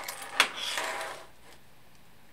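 Small robot-kit parts being handled by hand: a sharp click about half a second in, then about a second of rustling, after which only quiet room tone remains.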